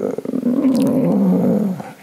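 An elderly man's long, rough, drawn-out hesitation sound, a wavering 'e-e-e' held for about a second and a half and fading near the end.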